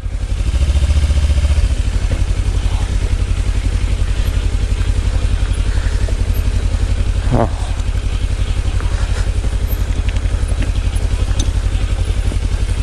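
Kawasaki Ninja 300's parallel-twin engine running steadily at low speed as the bike rolls slowly down a loose, rocky dirt track.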